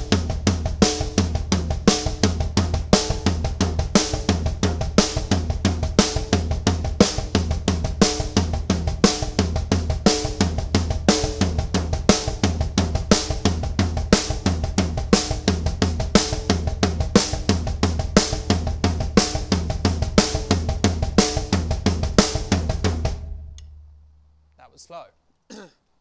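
Acoustic drum kit playing a slow, even pattern of single strokes that alternate between a stick on the snare and a single kick-drum pedal, filling the gaps between the hand strokes. It stops about 23 seconds in and rings out, and a throat is cleared near the end.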